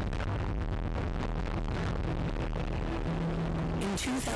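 Steady low rumble of a rocket launch in a film soundtrack, with a music score underneath; a low held note comes in near the end.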